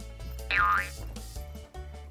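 Background music with a cartoon-style sound effect added over it: about half a second in, a short tone that slides down and then back up in pitch.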